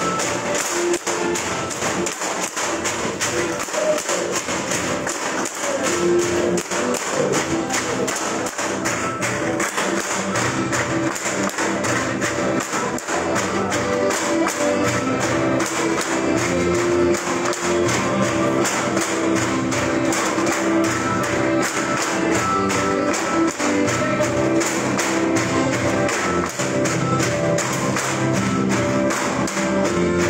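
Music with a steady beat, over the rhythmic clacking of bamboo poles clapped together and knocked against the floor poles for a bamboo dance.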